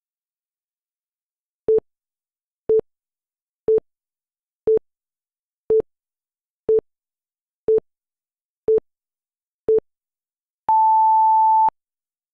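Countdown timer sound effect: nine short beeps about once a second, then one longer, higher beep about a second long as the count reaches zero.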